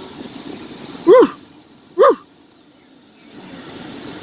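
A dog barking: two short, loud barks about a second apart, over a low steady hum.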